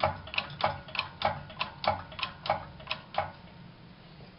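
Hydraulic shop press being hand-pumped, clicking about three times a second as the ram goes down to press a new front wheel bearing into the steering knuckle. The clicking stops near the end as the ram reaches the end of its travel.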